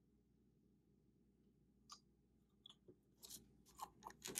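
Near silence, then a few faint clicks and light rubbing in the second half as a small glass vial is handled and its plastic cap is put back on.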